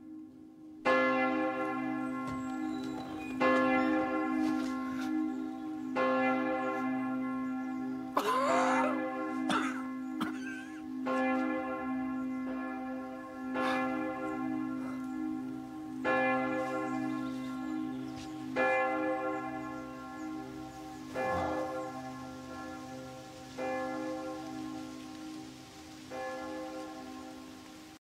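A church bell tolling slowly, about ten strokes roughly two and a half seconds apart, each stroke ringing on into the next under a steady hum.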